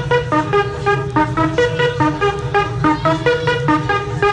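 Dance music from a club DJ set: a synthesizer riff of short repeated notes, about four a second, over a steady bass line.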